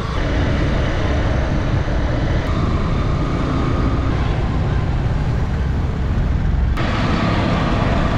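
Steady rumble of wind on the microphone and road and traffic noise, heard from a vehicle moving along a busy street. The sound changes abruptly near the end at a cut.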